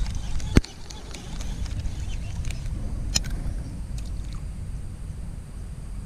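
A cast with a Daiwa Tatula SV TW baitcasting reel: one sharp click from the reel about half a second in, then a faint splash of the soft frog lure landing about three seconds in. A steady low wind rumble on the microphone runs under it.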